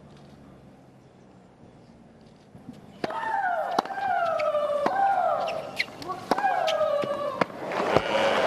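Professional women's tennis rally: after a hush, sharp racket hits on the ball start about three seconds in, most of them followed by a loud shriek from the hitting player that falls in pitch, about four shrieks roughly a second apart.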